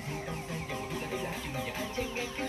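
Chickens clucking: a quick run of short calls, with a faint steady musical tone underneath.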